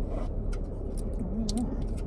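Steady low hum inside a car cabin, with a few faint clicks and rustles of small candy pieces and packaging being handled. A brief hummed murmur comes just after half a second in.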